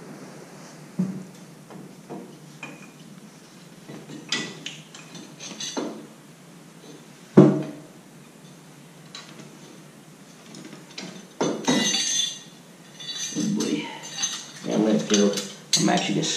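Small metal clinks and taps of brake caliper bolts and hardware being handled and fitted, scattered and irregular, with one sharper knock about seven seconds in and a busier patch of clinking later on.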